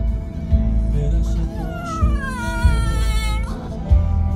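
Blue Staffordshire bull terrier puppy howling along to music: one long howl that begins about a second in and slides slowly down in pitch before breaking off, over a playing pop song.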